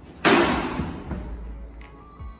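A sudden loud thud with a noisy tail that fades over about a second, over background music.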